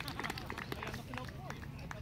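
Several people talking at a distance, their voices overlapping, with a few scattered light clicks.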